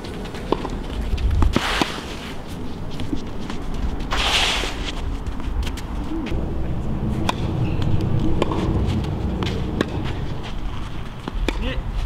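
Tennis ball struck back and forth with rackets in a rally on a clay court: sharp single pops at irregular intervals, with two short scrapes of shoes sliding on the clay in the first half.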